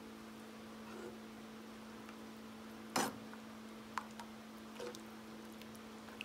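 Spoon stirring thick cream sauce in a skillet, faint, with one sharp clink of the spoon against the pan about halfway through and a lighter tick a second later, over a steady low hum.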